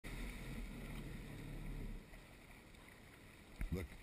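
Low rumble of wind buffeting the microphone of a camera on a kayak at sea, dropping away about two seconds in. A brief voice sound comes near the end.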